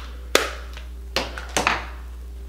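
Four sharp taps of makeup items being handled, the last two close together.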